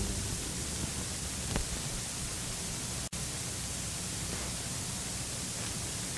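Steady hiss of an old tape recording in a pause between organ pieces, with a faint click about one and a half seconds in and a split-second dropout about halfway through.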